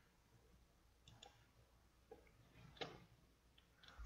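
Near silence broken by a few faint, short clicks of a computer mouse, the most distinct one a little before the third second.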